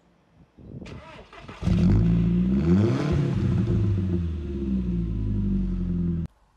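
Car engine starting: a short spell of cranking, then the engine catches about one and a half seconds in with a rev that rises and falls before settling into a steady idle, heard at its twin exhaust tips.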